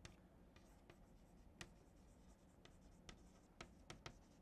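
Faint, scattered taps and scrapes of chalk writing on a blackboard, against near silence.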